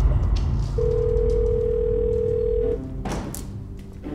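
A telephone ringing tone heard through the handset: one steady beep about two seconds long, then it stops. Underneath runs a low, rumbling drone of dramatic music, with a short whoosh about three seconds in.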